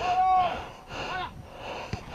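A man's drawn-out shout, held for about half a second, then a shorter call a little after a second in: players calling out during play.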